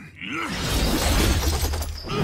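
A loud crash sound effect with a shattering, breaking quality and a heavy low rumble, setting in about half a second in and holding steady.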